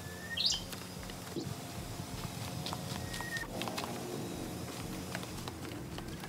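Birds calling: a short high chirp about half a second in and a few brief, level whistled notes spaced about three seconds apart, with faint light clicks in between.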